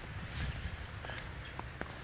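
Faint outdoor background noise: a steady low rumble with a few light clicks.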